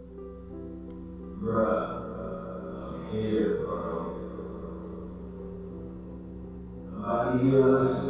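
Spirit box output played through an echo-heavy amplifier portal: garbled, reverberant voice-like fragments swept from radio come in bursts about a second and a half in, around three seconds, and near the end, over a steady hum and sustained droning tones.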